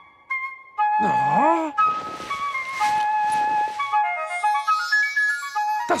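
A soft flute-like melody of short held notes, the cartoon's 'song' of sweet air bubbles trapped in the ice. About a second in, one tone swoops down and back up.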